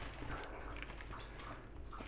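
Faint rustle of a cotton hoodie's fabric being flipped over by hand, with handling noise.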